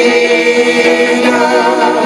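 Gospel choir singing, with several voices holding long sustained notes in harmony.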